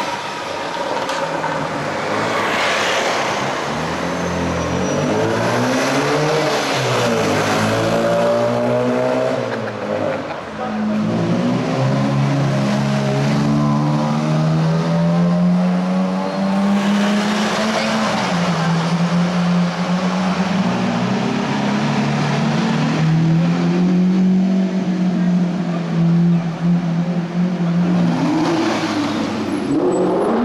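Supercar engines running and revving in slow street traffic, the pitch rising and falling with the throttle; from about a third of the way in, one loud engine note holds fairly steady, with small rises and dips, almost to the end.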